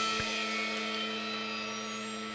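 A Les Paul electric guitar letting its last note ring out at the end of the song: one steady pitched note, slowly fading.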